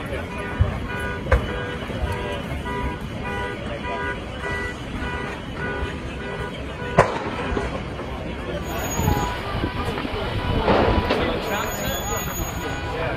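An electronic alarm beeping in a fast repeating pattern, about two beeps a second, over the murmur of a crowd, with a sharp knock about seven seconds in.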